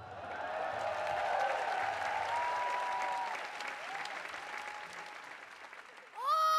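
Theatre audience applauding, with a few whoops rising over it; the applause swells over the first second and a half, then slowly dies away.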